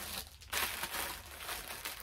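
Packaging crinkling as it is handled, irregular and fairly faint, after a brief lull near the start.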